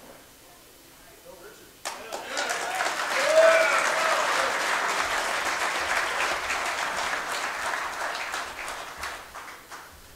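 Audience applauding, starting suddenly about two seconds in and dying away near the end, with a short cheer from someone in the crowd about three seconds in.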